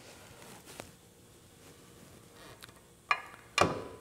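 Mostly quiet, with a few faint ticks and one sharp click about three seconds in, from the rotary top of a Pro 9T rear-end fixture jig being handled on its pivot.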